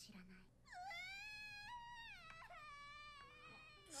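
A high-pitched, drawn-out wailing voice of an anime character, faint, held for about three seconds and dropping to a lower pitch partway through.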